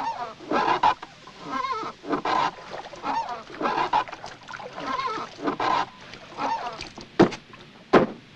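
A run of short honking animal calls, one or two a second, with a single sharp knock about seven seconds in.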